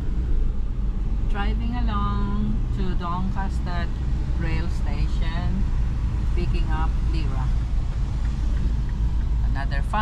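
Steady low rumble of a car's cabin noise while driving on a wet road. Indistinct voices talk inside the car over it during the first half.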